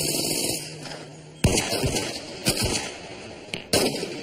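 Gunshot sound effects: a few sharp shots about a second apart in the second half, after a stretch of noisy background with a steady low hum.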